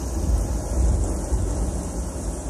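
Thrashing black metal band playing live, heard through a raw audience bootleg recording: a dense, distorted wash dominated by deep rumble, with no clear notes standing out.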